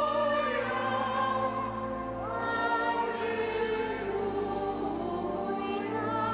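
Choir singing a slow hymn in long held notes with vibrato, over a steady low accompaniment; the notes change about two seconds in.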